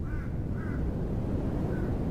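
A bird calling three times in short rising-and-falling notes, over a low steady rumble of outdoor ambience.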